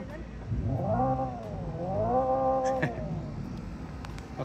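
Hyundai Ioniq 5 N's synthetic engine sound played through its speakers as the accelerator is blipped with the car standing still: the pitch climbs and dips, then climbs again and holds briefly before falling away about three seconds in. It is an artificial combustion-engine sound on an electric car.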